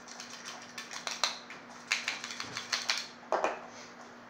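A run of quick, irregular clicks and light knocks as a flathead screwdriver is worked through a small plastic screwdriver magnetizer block to magnetize its tip, with a louder knock near the end.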